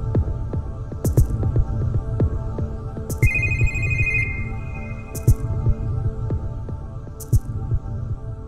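Background music: a steady low pulsing beat with a bright cymbal-like swish about every two seconds and a sustained bell-like tone about three seconds in, fading out toward the end.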